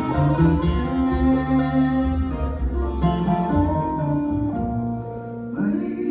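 Live bluegrass band playing, with fiddle, mandolin, acoustic guitar, dobro and upright bass: long held notes over a steady bass line, and a new phrase starting near the end.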